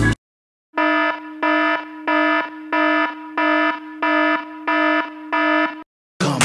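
An electronic alarm beeping eight times in an even rhythm, about one and a half beeps a second, on a single buzzy pitch. It starts after a brief silence.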